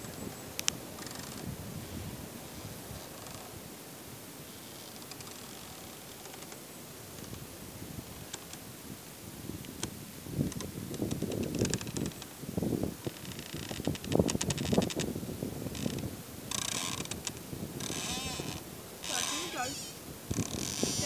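A large tree creaking where its trunk presses into a wooden fence rail that it has grown around. After a quieter first half, a run of drawn-out creaks begins about halfway through, turning into higher squeaks near the end.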